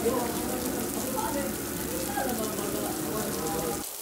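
Steady hiss of rain with people's voices talking in the background; both cut off suddenly just before the end.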